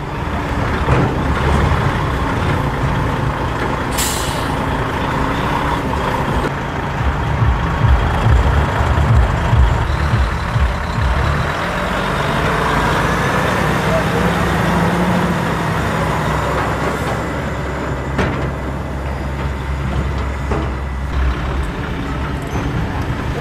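Heavy diesel truck engine running steadily at close range, with a sharp burst of air hiss about four seconds in, typical of an air brake.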